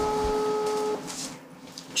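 German telephone ringback tone played through a smartphone's loudspeaker: one steady beep about a second long, a single pitch with fainter overtones, meaning the call is ringing at the other end and has not yet been answered.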